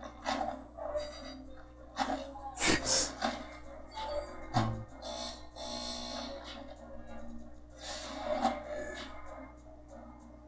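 Soundtrack of an animated TV episode playing at moderate level: music with sound effects, including sharp hits about two and a half to three seconds in.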